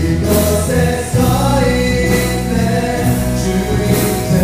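A live contemporary worship band playing: singing over acoustic guitar, keyboard and a drum kit with steady cymbals.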